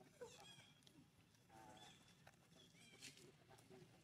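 Faint, short, high squeaks from infant macaques, a few calls spaced a second or so apart.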